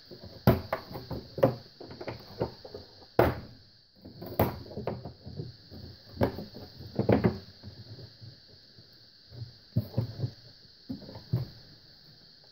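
Metal latches on the wooden, canvas-covered case of a 1934 BC-157-A army radio being unfastened one after another: a series of irregular sharp clicks and knocks as the clasps are worked and the lid is freed.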